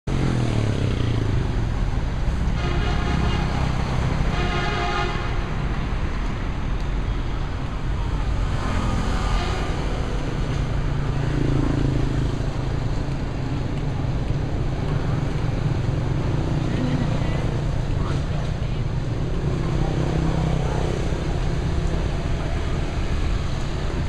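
Steady urban traffic noise from motorbikes and cars, a continuous low rumble, with two short horn toots a few seconds in.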